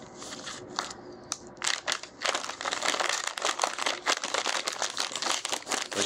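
Plastic cat-treat packet crinkling as it is handled, with a few sparse crackles at first, then a dense, louder rustle from about two seconds in.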